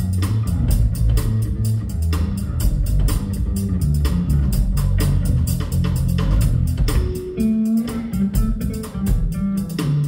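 Electric bass guitar played live through an amplifier: a busy run of low plucked notes with sharp percussive attacks, rising to a higher held note about seven and a half seconds in.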